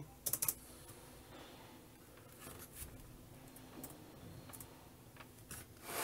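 Four or five quick, sharp clicks of laptop keys pressed on the Hometech Alfa 400c notebook to wake it, early on, followed by a quiet stretch with a few faint key ticks.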